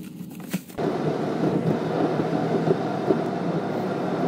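A brief knock, then from about a second in the steady road and engine noise of a car heard from inside the cabin while driving.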